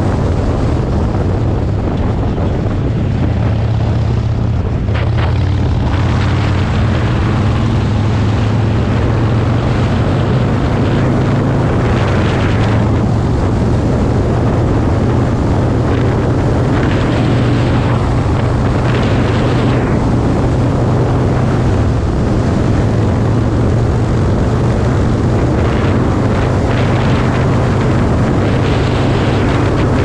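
Harley-Davidson Roadster's 1202cc V-twin engine running steadily at road speed, with wind rushing over the microphone.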